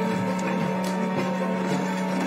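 Background score of low sustained strings holding a steady note, with a few faint taps over it.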